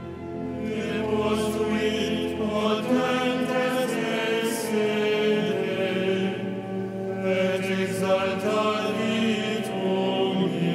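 Liturgical chant at Vespers: voices singing a slow chanted text, their notes moving step by step over sustained notes held beneath them.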